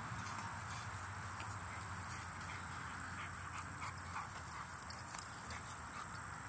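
Light, scattered ticks and grass rustling from a puppy rolling and moving about on a lawn, over a steady high insect drone.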